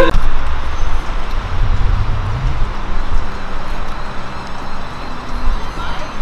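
City street noise: a steady low traffic rumble with a hiss over it, swelling a little about two seconds in.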